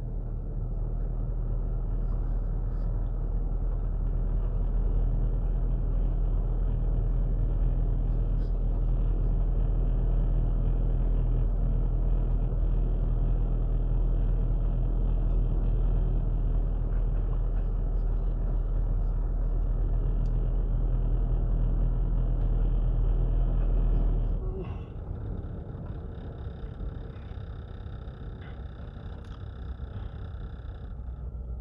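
Car engine and road rumble heard from inside the cabin while driving slowly down a street. The rumble is steady, then drops sharply about 24 seconds in as the car slows.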